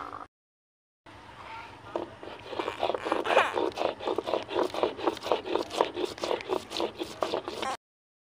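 Stone roller (batta) rubbed back and forth on a flat stone slab (sil), grinding green chillies, garlic and mustard seed into a masala paste. It is a rhythmic scraping of stone on stone at about three strokes a second, starting about a second in.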